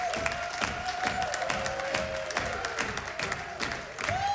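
Audience applauding, with sustained cheers and whoops held over the clapping.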